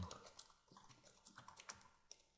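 Faint computer keyboard typing: a quick, irregular run of light key clicks that stops shortly before the end.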